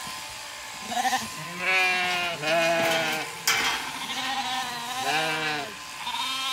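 Zwartbles lambs bleating, about four separate calls, two of them long and drawn out: they are calling for their ewe, whom they don't recognise after her shearing.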